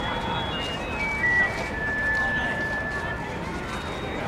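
Voices of people in the background over outdoor hubbub, with a high melody of held notes stepping from pitch to pitch; one note is held for about a second and a half in the middle.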